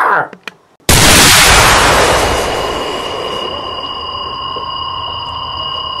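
An added magic-spell sound effect: a sudden loud blast of noise about a second in that slowly fades, with a steady high ringing chord held over it.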